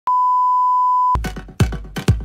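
Steady single-pitch test-tone beep over TV colour bars for about a second, cut off abruptly. Electronic dance music with a heavy kick drum about twice a second starts straight after.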